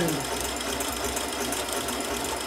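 Janome sewing machine running steadily, stitching through fabric on a triple stitch.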